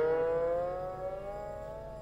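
A single sustained note on a siddha veena, a slide-played Hindustani guitar, fading while the slide carries its pitch slowly upward in a long glide (meend).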